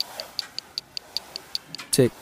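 Clock ticking in a rap song's intro, sharp even ticks at about five a second.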